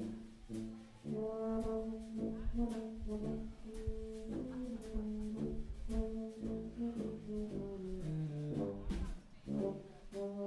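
Live brass band with drum kit playing: a few short horn stabs, then from about a second in held horn chords over a low bass line, with drum hits throughout.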